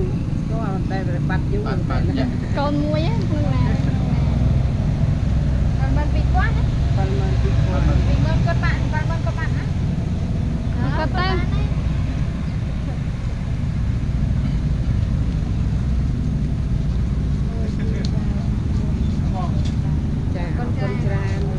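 Intermittent talking between people over a steady low rumble.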